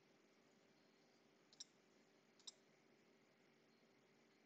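Two faint computer mouse clicks about a second apart, over near-silent room tone.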